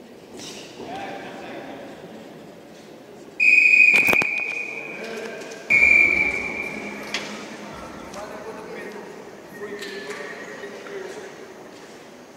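Two long, steady, high-pitched whistle blasts about a second apart, over voices in the hall, with a sharp knock during the first.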